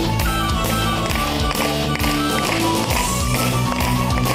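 Live rock band playing an instrumental intro in a medieval-rock style: drums keep a steady beat, about two hits a second, under electric guitar and a sustained keyboard melody.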